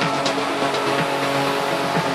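Melodic techno / progressive house music: held synth chords over a beat of about two percussion hits a second, the beat thinning out.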